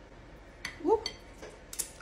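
A woman's short rising "ooh" as she bites into a piece of hot cinnamon roll, with a few faint clicks around it and a sharp hiss near the end.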